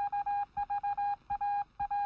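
Electronic beeping on one steady pitch, in quick clusters of short and longer pulses like Morse code, as part of a news outro sting.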